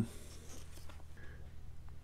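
Quiet room tone from a home recording: a steady low hum with a few faint small clicks and rustles, one thin click near the end.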